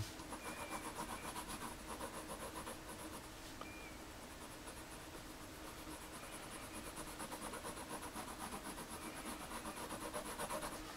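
Drawing tool scratching back and forth on paper in quick, even shading strokes, laying in a dark tone; the strokes ease off a little in the middle.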